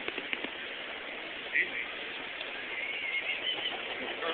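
Steady ambience of a crowded station concourse: a murmur of people with indistinct distant voices in a large echoing hall, and a few short clicks near the start.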